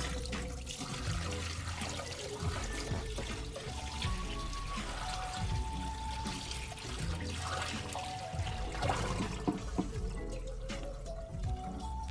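Water pouring out of a tipped Fluval canister filter's canister body and splashing into a stainless steel sink, running steadily throughout.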